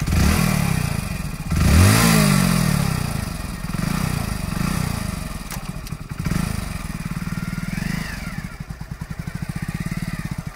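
Hero Splendor Plus motorcycle's single-cylinder four-stroke engine running at idle with a steady pulsing beat. The throttle is blipped about two seconds in, the revs rising and falling, followed by several smaller rev swells.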